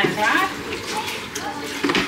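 Washing up at a sink: water running from the tap while a plastic washing-up tub and dishes are rinsed and scrubbed, with a few small knocks.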